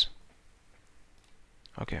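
A sharp computer mouse click right at the start, then a few faint clicks over low room tone.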